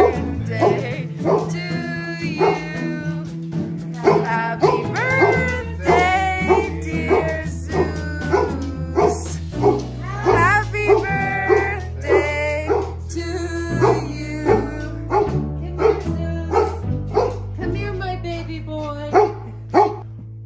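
Golden retrievers barking repeatedly in short, sharp barks over background music with a steady bass line.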